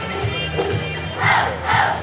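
A large group of children singing loudly together, with louder, almost shouted surges near the end.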